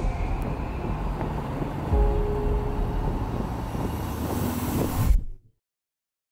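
Logo-sting sound design: a dense low rumble with a deep bass hit about two seconds in and a rising whoosh building over the next few seconds, cutting off suddenly a little after five seconds.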